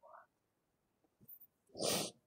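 A short, sharp intake of breath near the end, after a near-silent pause with a faint click a little before it.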